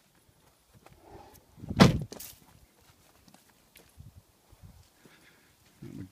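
A car door on a Toyota Land Cruiser 80 shut with a single heavy thump about two seconds in, followed by faint scuffs and light knocks.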